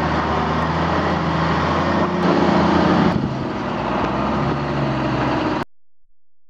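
Mercedes Unimog truck's engine running under load while towing a stuck Daihatsu Rocky out of a muddy water crossing. It gets louder for about a second in the middle, and the sound cuts off suddenly near the end.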